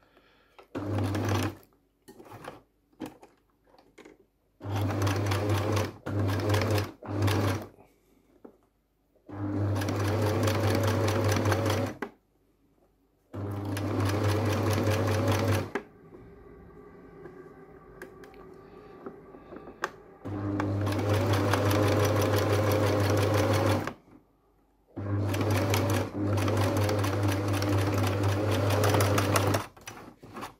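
Electric domestic sewing machine stitching in repeated runs of one to four seconds, stopping and starting as the fabric is guided, with a quieter stretch in the middle. Short clicks fall in the gaps between runs.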